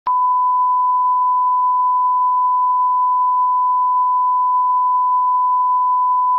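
Steady 1 kHz reference test tone, the continuous pure sine tone that goes with SMPTE colour bars, starting with a brief click.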